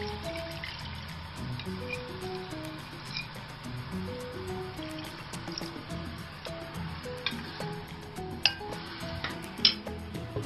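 Background music with a simple melody, over rice water pouring from a bowl into a pan. Two sharp clinks near the end.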